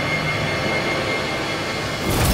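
Steady synthesized drone from a drama's background score: a held chord of many sustained tones with no beat.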